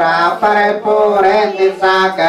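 Buddhist Pali chanting: voices reciting in unison on one steady, held pitch, with short breaks between phrases.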